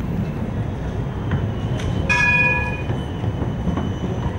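A rail vehicle rumbling past, with a brief high ringing tone about two seconds in.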